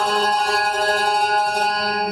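Live band music through a stage sound system. The drumbeat has dropped out and a sustained chord rings on steadily.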